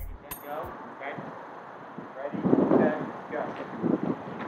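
The last drum hits of an electronic music sting, ending within the first second. Then outdoor background noise with faint, indistinct voices, getting louder from about two seconds in.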